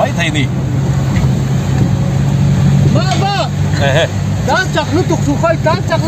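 Car engine and road noise heard from inside the cabin while driving: a steady low drone. Men's voices talk over it from about halfway through.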